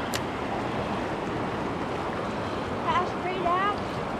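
Steady wash of stream water running over a shallow riffle. There is a short click right at the start and a faint voice near the end.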